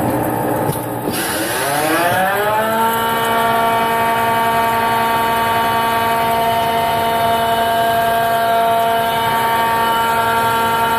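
Hardinge AHC lathe's spindle drive speeding up with a rising whine over about two seconds, starting about a second in, then running at a steady pitch.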